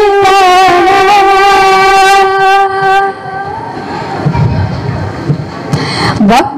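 A boy singing a Mappila song into a stage microphone, holding one long note with vibrato for about three seconds. The note fades out about halfway through, leaving a couple of seconds of quieter background noise.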